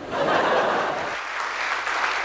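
Audience applause, breaking out all at once and going on steadily.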